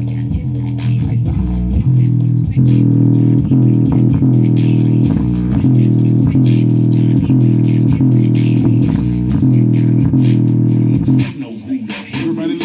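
Music with a heavy bass line and a steady beat, played loud through a JBL Xtreme portable Bluetooth speaker running in its low-frequency mode on mains power. Near the end the music dips briefly in loudness.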